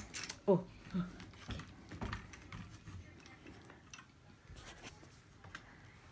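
Light clicks and knocks of a camera tripod being handled, its centre-column crank and pan-tilt head being worked, thinning out after a few seconds.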